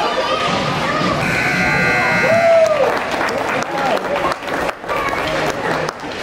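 Voices of spectators and players talking and chattering in an ice rink. A few sharp knocks come in the second half.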